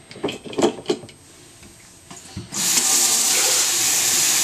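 A few light clicks and knocks of handling at the sink. Then, about two and a half seconds in, a kitchen faucet is turned on and water runs steadily into a plastic cup.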